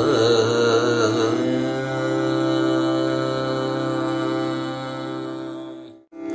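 Male Carnatic vocalist singing over a steady drone: wavering, ornamented phrases for the first second or so, then one long held note that fades away just before the end.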